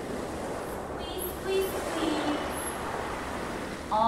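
A steady rushing noise, with a voice faintly heard over it now and then.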